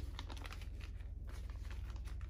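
Clear plastic zip-top bags crinkling as they are handled and folded, a scatter of short crackles.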